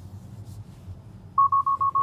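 Tesla Model 3 alert chime: five rapid, high beeps on one pitch, starting about a second and a half in, the warning that Autopilot wants the driver to take over. Low, steady road hum in the cabin underneath.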